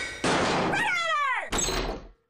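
Cartoon-style sound effect from a TV channel bumper: a burst of noise, then a quickly falling tone that ends in a thunk about one and a half seconds in, before it fades out.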